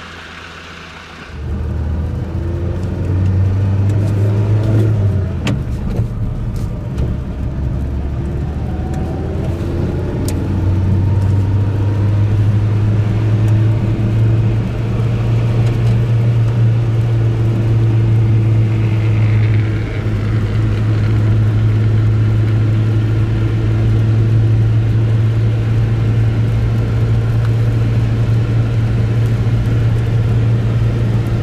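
A car being driven, heard from inside the cabin: a steady low engine hum with tyre noise on a wet road. The sound jumps up about a second in, the engine note rises and falls with gear changes over the first ten seconds, then holds steady at cruising speed.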